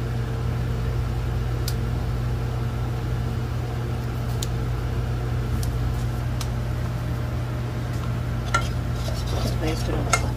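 A steady low mechanical hum runs throughout, with a few faint ticks. Near the end a metal fork clinks and scrapes against a metal saucepan as flour is stirred into a butter roux.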